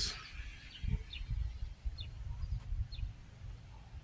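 Songbird chirping a few times, short faint chirps about a second apart, over a low uneven rumble on the microphone.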